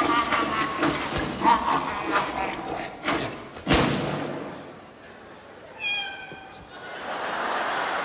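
A clown's wordless vocal sounds, then a single sharp thud with a short ring a little before the middle. A brief high, pitched cry follows, and near the end an audience laughs.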